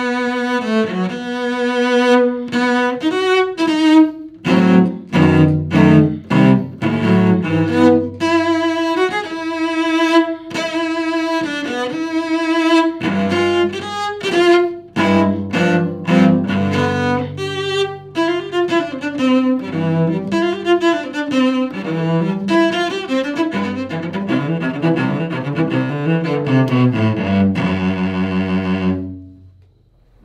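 Upton cello, a new cello built by a double-bass maker, played solo with the bow: a run of held and moving notes ranging from deep low notes up into the higher register. The playing stops about a second before the end.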